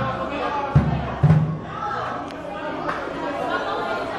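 Drum kit hit unevenly by a small child with sticks: two loud low drum thuds a second or so in, over background chatter of voices in a large room.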